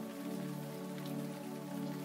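Steady rain falling, with a sustained synthesizer chord held beneath it.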